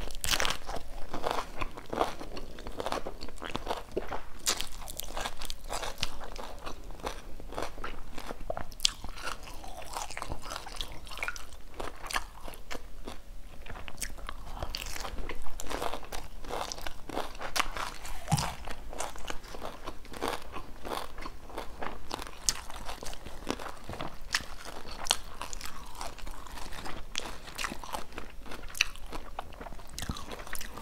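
Close-miked chewing of crisp fried Vietnamese spring rolls (chả giò) with rice-paper wrappers, eaten wrapped in lettuce and herbs: a long run of very crunchy bites and crackling chews.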